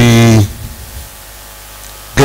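A man's voice over a microphone holds one drawn-out word for about half a second at the start. After that there is only the steady hiss and hum of the sound system.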